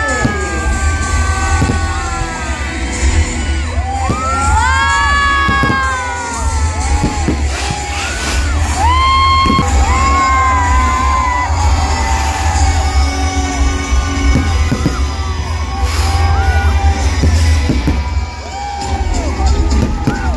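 Music with a heavy bass played over a stage sound system, under a crowd whooping and cheering, with a few sharp fireworks bangs, the clearest about three-quarters of the way through.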